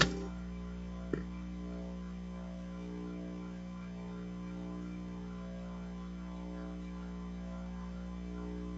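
Steady electrical mains hum from the sound system, with a single sharp click about a second in.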